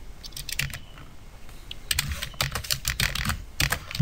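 Typing on a computer keyboard: a few keystrokes, a pause of about a second, then a quicker run of keys.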